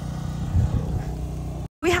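A low, steady engine hum, evenly pitched and running under light outdoor noise; a voice starts just before the end.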